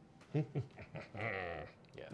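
A man laughing softly: a brief sound, then one held, wavering bleat-like laugh about a second in.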